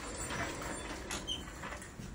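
Ambulance stretcher backrest being raised to sit the patient up: a few faint clicks and rustles from the stretcher's frame and mechanism.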